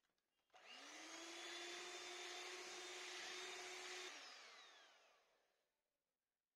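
Electric hand mixer beating cream cheese filling: the motor starts about half a second in, rises briefly to speed and runs with a steady whine, then is switched off about four seconds in and winds down, its pitch falling as it fades.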